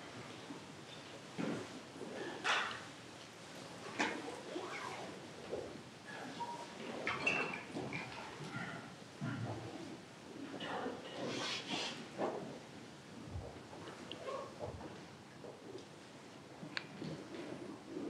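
Faint sounds of a group of people moving about a hall as doors are opened for fresh air: scattered knocks, clicks and rustling, with a few brief squeaks.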